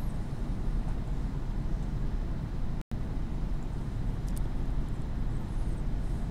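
Steady low background rumble of room noise with no speech, cut by a momentary dropout in the audio a little before the three-second mark.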